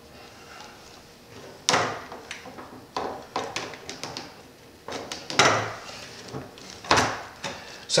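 Plastic pipe fittings and copper tubing rails being handled and fitted together on a wooden surface: a series of sharp plastic and metal knocks and clacks with some scraping, the loudest about two seconds in, about five seconds in and near seven seconds.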